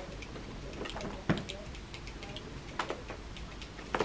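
Two soft clicks about a second and a half apart from a cordless hair straightener being handled and clamped on a lock of hair, over a quiet room hum.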